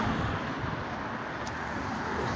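Steady road traffic noise from cars passing along a city street.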